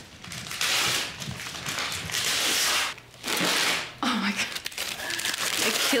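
Gift wrapping paper and tissue paper being torn and crumpled as a present is unwrapped, in two long rustling spells with a short break about halfway, then lighter rustling.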